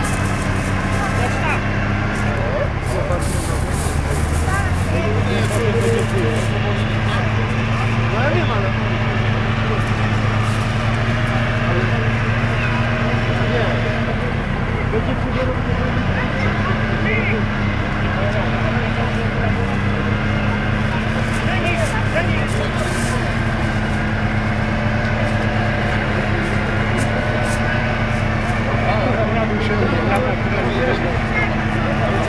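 Engine of a Volvo BV 202 tracked over-snow carrier running under load as it wades through deep mud and water. The revs sag a few seconds in and briefly again about halfway, then pick back up.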